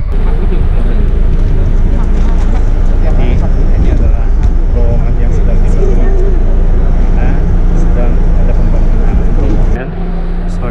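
Indistinct chatter of a group of people talking at once, over a loud, steady low rumble.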